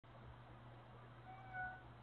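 Faint room tone with a low steady hum; about a second and a half in, a brief, faint pitched sound lasting about half a second.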